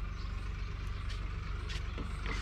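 A tractor engine running steadily off to one side, an even low throb. A few faint clicks sound over it.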